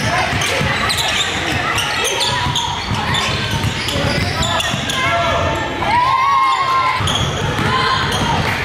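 A basketball being dribbled on a hardwood gym floor, the bounces echoing in a large hall, with indistinct voices of players and spectators.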